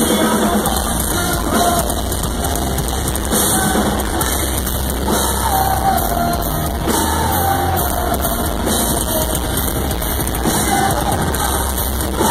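A metalcore band playing live and loud, with a sung vocal line over guitars and a drum kit, continuous throughout.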